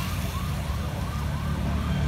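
Police escort siren sounding in quick repeated rising sweeps, about three a second, under the louder low engine note of a motorcycle passing close by.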